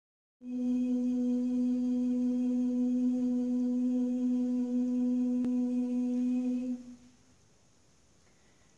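One long hummed note held on a single steady pitch, starting about half a second in and stopping after about six seconds.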